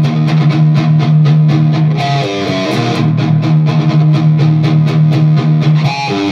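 Electric guitar played through a KHDK Ghoul Screamer overdrive pedal: a fast, evenly picked chugging riff on one low note, with a short run of higher notes about two seconds in and again near the end.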